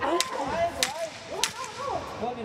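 Three sharp smacks about 0.6 s apart as Muay Thai strikes land, the first a roundhouse kick slapping into the opponent's arms and guard, with shouted voices from ringside around them.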